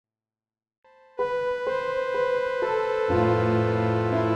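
Software synthesizer music starting from silence. A faint note comes in just under a second in, then a bright pitched note is struck about twice a second, and a deep bass and chord join just after three seconds.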